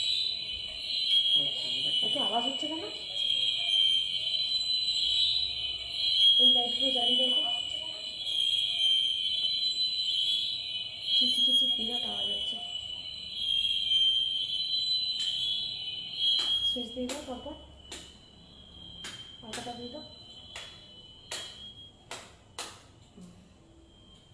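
A continuous shrill, high-pitched electronic tone, alarm-like, with short bits of a woman's humming under it; the tone fades about two-thirds of the way through and gives way to a string of sharp clicks.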